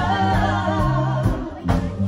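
Live reggae-soul band: female vocalists singing long, wavering notes together over a steady bass line.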